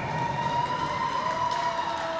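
A steady, siren-like tone held for nearly two seconds, dipping slightly in pitch near the end, with a second lower tone coming in just before it stops, over the background noise of an ice rink.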